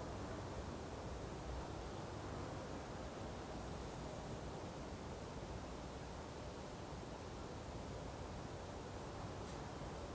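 Faint steady hiss of background noise, with no distinct sound events.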